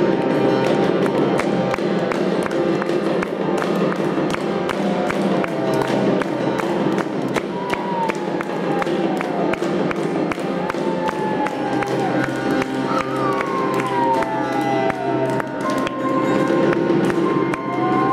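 Live chamber music for piano, cello and pre-Hispanic percussion. Percussion strikes come thick and fast over sustained notes, and several long sliding notes fall in pitch through the middle.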